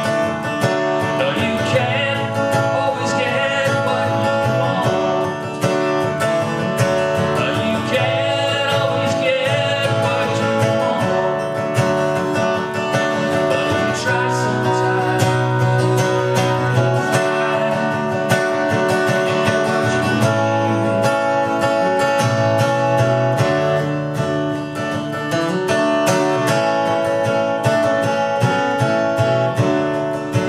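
Acoustic guitar strummed steadily in a live song, with a man singing over it in stretches.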